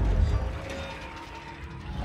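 Film soundtrack: a heavy low rumble, loudest at the start and easing off, with metallic grinding and ratcheting sound effects over a quiet musical score.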